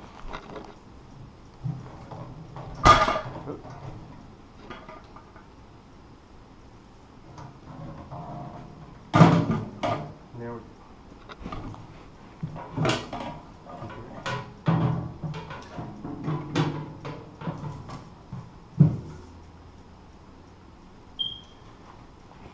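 Irregular metal knocks and clanks from a steel mailbox mounting arm and its brackets being handled and repositioned. There are half a dozen sharp, loud hits spread through, with softer rattles between.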